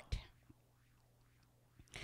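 A pause in a woman's speech: near silence with a faint steady low hum, a brief soft trailing sound just after the start and a faint breath near the end before she speaks again.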